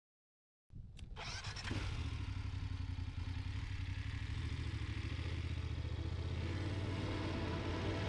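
Motorcycle engine running on the road with wind and road noise, cutting in suddenly under a second in, with a sharp click just after. The engine and noise grow slightly louder near the end as the bike gains speed.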